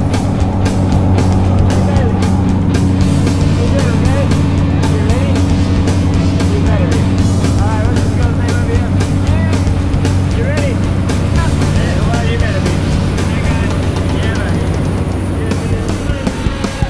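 Steady drone of a jump plane's engine and propeller heard inside the cabin, with voices raised over it.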